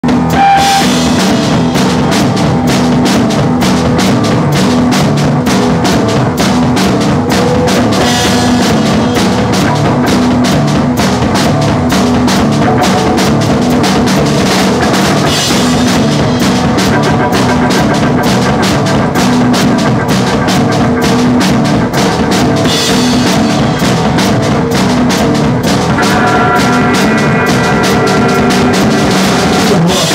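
A rock band playing loud and fast, the drum kit driving a rapid, unbroken beat under sustained pitched instrument tones, with no singing.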